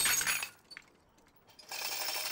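Steel crane-scale hooks and S-hooks clinking and ringing briefly as a 3D-printed PETG tensile test bar snaps and the freed hook swings. This is followed by near silence, and then a steady hiss that starts near the end.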